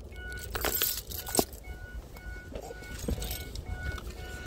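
A vehicle's electronic warning chime beeping steadily, about three beeps a second, over the low rumble of the vehicle rolling along with the window down.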